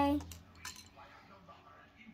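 Faint clicks and rattles of small plastic Lego pieces and minifigures being handled on a table, with one clearer click a little under a second in.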